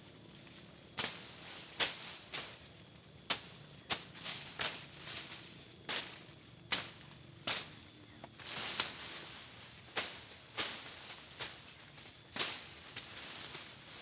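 A small hand tool striking and scraping into soil and roots at the base of a young pule tree, digging around it to uproot it. It comes as an irregular series of sharp scrapes, roughly one every half second to a second, with one longer scrape a little past the middle.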